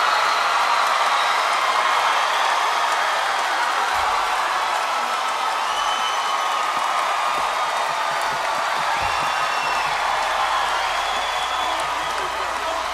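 A large audience applauding and cheering steadily.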